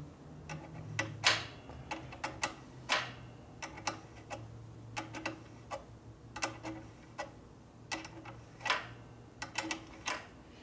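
Irregular sharp metallic clicks of a wrench working the clutch cable adjuster on a 1974 Harley-Davidson Shovelhead. The adjuster threads are tight and being worked clean as it turns.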